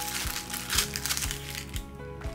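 Plastic mailer bag crinkling as it is torn open and a small box is pulled out, over background music with a steady beat.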